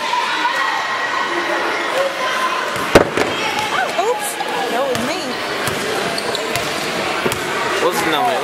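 Spectators talking and calling out in a gymnasium while a basketball bounces on the court floor; one sharp bang about three seconds in is the loudest sound, with a few lighter knocks later.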